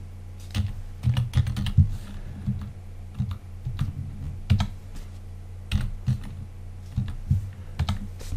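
Typing on a computer keyboard: irregular runs of keystrokes, over a steady low hum.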